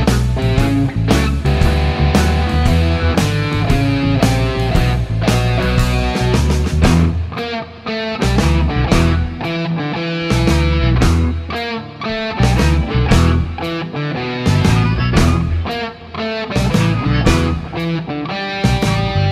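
Electric guitar playing a blues piece over a backing track with a steady drum beat and bass.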